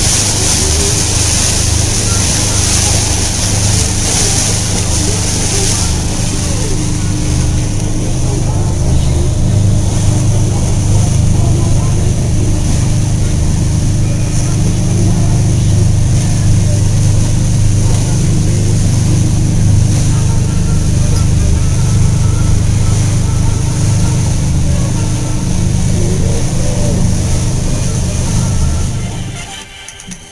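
Motorboat running at speed: a loud, steady engine drone mixed with rushing wind and water noise on the microphone, cutting off suddenly near the end.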